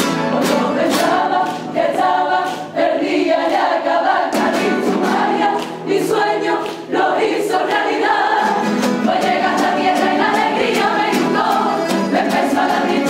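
A Cádiz carnival coro singing together in chorus, men's and women's voices, with strummed guitar accompaniment in a steady beat.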